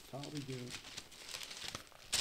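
Newspaper pages rustling and crinkling as they are turned and folded, with a brief murmur from a man's voice in the first half second.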